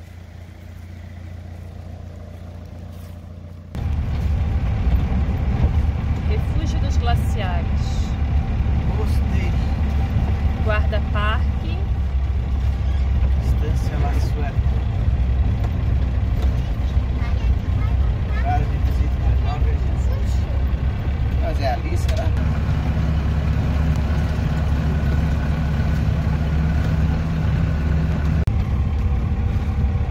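Cab interior of a truck-based motorhome driving on a gravel road: a steady engine drone with tyre and road rumble, which starts suddenly about four seconds in after a quieter stretch. Faint voices come and go over it.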